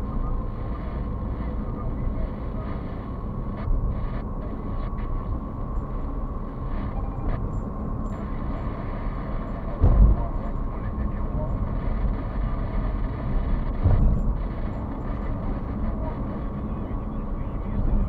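Road and engine noise inside a moving car's cabin, a steady rumble, with two thumps about ten and fourteen seconds in as the wheels go over joints at a bridge.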